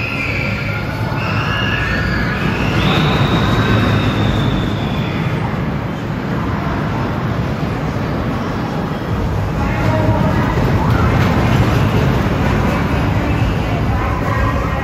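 Steel roller coaster train running along its track with a steady rumble, swelling again about ten seconds in. High squeals sound over it in the first few seconds.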